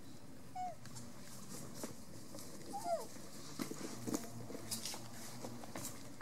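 Two short squeaks from a newborn macaque: a brief one about half a second in and a longer one that rises and then falls about three seconds in, with faint scattered clicks and scuffs.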